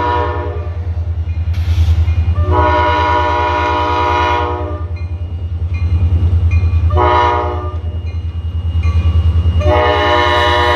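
A Nathan K5LA five-chime air horn on an EMD SD40-2 diesel locomotive sounds the grade-crossing signal. The end of a long blast comes about half a second in, then a second long blast of about two seconds, a short blast about seven seconds in, and the final long blast beginning near the end. Under the horn runs the locomotive's steady low rumble as it approaches.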